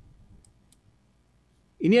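Two light computer-mouse clicks about a quarter second apart, made while trying to advance a stuck presentation slide, followed near the end by a man's voice.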